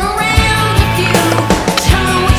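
Rock music soundtrack with a steady drum beat and sustained guitar and vocal tones.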